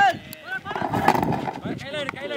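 Mostly voices: talk and calls from the commentator and people at the ground, with one brief sharp click a moment in.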